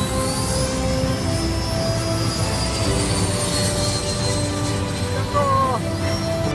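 High-pitched whine of a radio-controlled model jet in flight, rising slightly in pitch over the first second and then holding steady, mixed with background music.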